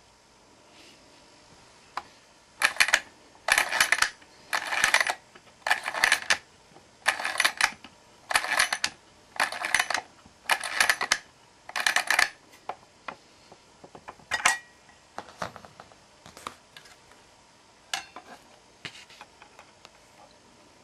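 Clockwork motor of a Lumar toy gramophone being wound with its key: nine bursts of ratchet clicking, one per turn, about a second apart. Then scattered lighter clicks and knocks as the parts are handled and the tone arm is fitted.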